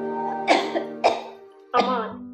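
A sick woman lying in bed coughs three times, about half a second apart, over soft sustained background music.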